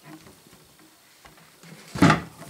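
Faint handling sounds, a few soft ticks and rubs, from the pump handles of a hand-operated hydraulic tool being worked.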